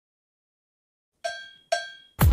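Silence, then two cowbell strokes about half a second apart, each ringing briefly and fading.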